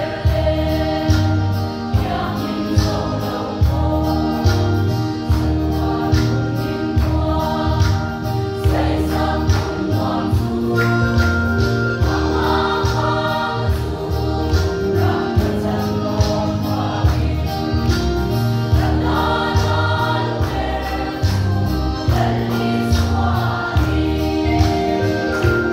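Women's choir singing a gospel song in Mizo, backed by an electronic keyboard playing sustained bass notes with a steady beat about once a second.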